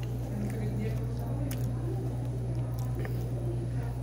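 A man chewing a mouthful of food, with faint voices and a steady low hum behind.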